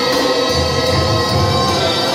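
Live Mexican banda music: clarinets and trombones play held notes over a pulsing low bass, with a man singing.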